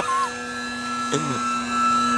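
Electric RC plane's motor and propeller running at a steady pitch as the plane flies low past, shortly after a hand launch.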